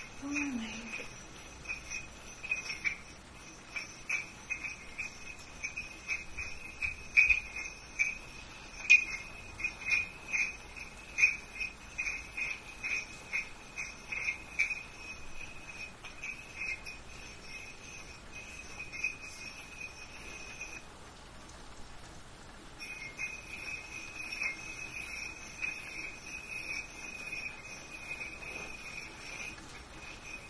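Crickets chirping: a steady, high, pulsing trill that stops for about two seconds some two-thirds of the way through, then starts again.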